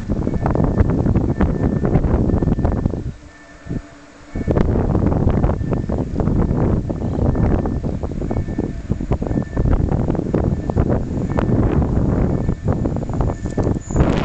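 Strong wind buffeting the microphone in ragged gusts, dropping away briefly about three seconds in.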